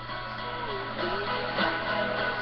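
A girl singing a teen-pop song into a handheld microphone over a backing track with strummed guitar; the music gets a little louder about a second in.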